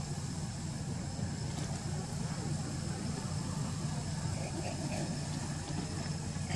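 A vehicle engine idling: a steady, even low drone.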